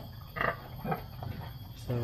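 Pregnant sow at her feeding trough making a few short, irregular grunts, the strongest about half a second in and another near one second.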